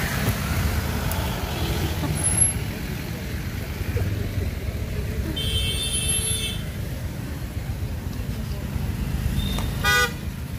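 Low rumble of motorcycles and cars idling and creeping in stalled traffic. A vehicle horn honks for about a second just past the middle, and another short honk sounds near the end.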